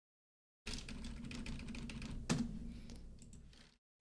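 Typing on a computer keyboard: a quick run of key clicks that cuts in abruptly about half a second in, with one louder keystroke near the middle, then tails off just before the end.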